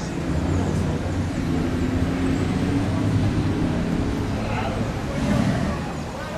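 A motor vehicle's engine running, a steady low hum that eases off near the end, with voices over it.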